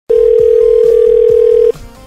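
Telephone ringback tone heard down the phone line: one steady ring, about a second and a half long, that stops just before the call is answered.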